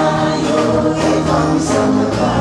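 Live gospel worship music: two women's voices singing together over a band with drum kit.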